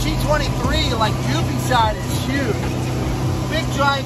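Ski Nautique G23 wake boat's inboard engine running steadily under way, a low drone mixed with the rush of the wake, with a man talking over it.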